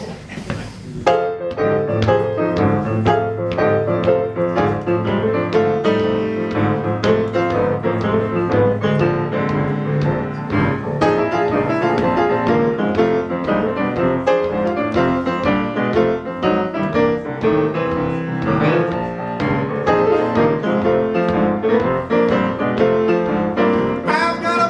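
Solo grand piano playing the instrumental introduction to a slower blues number, a steady run of chords and melody lines that starts about a second in.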